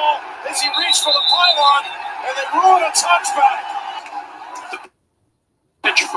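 Football broadcast audio with voices over a stadium background and a few sharp clicks, cutting out to dead silence for about a second near the end before the next clip's sound starts.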